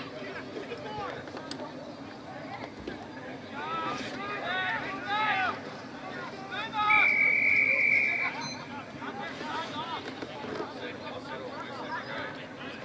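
Umpire's whistle: one steady, shrill blast about seven seconds in, lasting about a second and a half, stopping play as the ball goes out of bounds. Before it, people shout across the ground during play.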